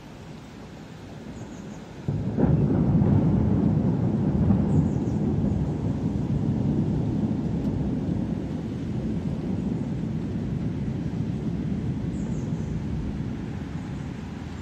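Thunder: a sudden clap about two seconds in that rolls on as a long, low rumble, slowly fading.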